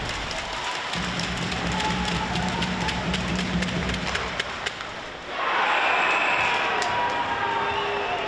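Ice hockey arena sound: crowd noise with music and scattered clicks of sticks, skates and puck on the ice. About five seconds in, the crowd noise rises sharply into cheering as a goal is scored.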